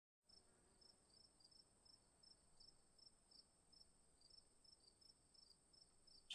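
Near silence: only a very faint, steady high-pitched whine with faint ticks a few times a second.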